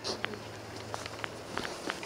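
A steady low hum with faint, scattered short clicks and taps, a few more of them in the second second.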